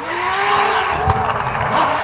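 Drift car sliding sideways at high revs: the engine note climbs in the first moments and holds high, easing slightly after the middle, over the hiss of the rear tyres spinning and smoking.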